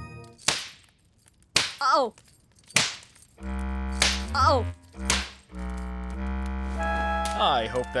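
Four sharp smacks about a second apart, a spanking, with a wavering, falling yelp after the second and fourth. A steady low hum joins about halfway through.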